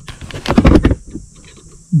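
Quick run of light metal clicks and scrapes about half a second in, lasting about half a second: a metal rod knocking against the splined steering-shaft yoke.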